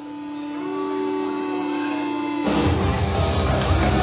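Rock music fading in on long held notes, then the full band with heavy drums kicking in about two and a half seconds in.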